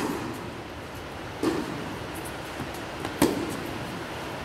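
Tennis rally: a racket strikes the ball right at the start, again about a second and a half later, and again sharply just after three seconds, each hit echoing in a large indoor hall.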